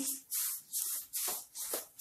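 Sesame seeds being stirred into thick jaggery syrup in a metal kadhai with a wooden spatula: a gritty scraping rasp with each stroke, about two strokes a second.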